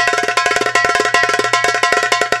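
Darbuka (goblet drum) played with the fingers in a fast, continuous run of strokes, about a dozen a second, with a bright ringing tone, over a low steady hum.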